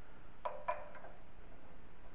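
Two light metallic ticks a quarter-second apart, about half a second in: a hex key clicking against a button-head bolt as it is threaded into the metal gantry bracket.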